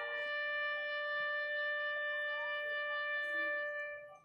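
A solo wind instrument plays a slow tribute tune during a minute of silence, holding one long steady note that fades out near the end.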